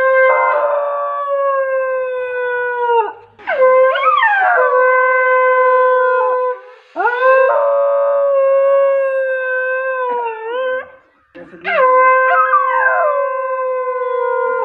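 A dog howling along to a man blowing long, steady notes on a small handheld wind instrument. Each note is held for about three seconds with short breaks between. The dog's howls slide downward in pitch over the note, three or four times.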